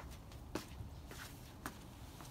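Faint scraping and brushing of snow as gloved hands sweep it off a car's hood, with two soft clicks, one about half a second in and one about a second and a half in.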